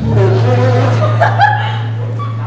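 A live band plays a steady, held low bass note under a wavering voice line, with the vocal amplified through the PA in a large room.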